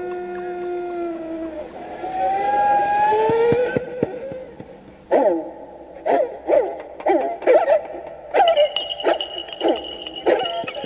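Kobyz, the Kazakh bowed horsehair fiddle, playing long sliding notes, then from about halfway a quick run of short downward slides. A thin high steady tone joins near the end.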